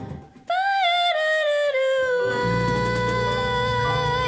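A woman singing into a microphone with a Latin jazz band. After a brief break she comes in on a high note, steps down to a lower note and holds it with vibrato. The band's low accompaniment comes back in about halfway through.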